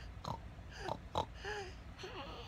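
A toddler imitating a pig, making about four short oinking noises in quick succession.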